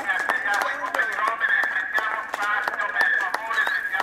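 A large pack of racing cyclists moving off from the start, heard as a stream of many sharp, scattered clicks over a mix of crowd voices.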